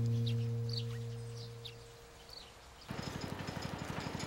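A held background-music chord fades out while small birds chirp. About three seconds in, the engine of a small farm utility vehicle cuts in, running with a fast, even putter as it is driven.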